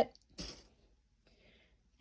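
Quiet handling of cotton fabric as its edge is rolled between the fingers. A brief soft rustle comes about half a second in and a fainter one a second later.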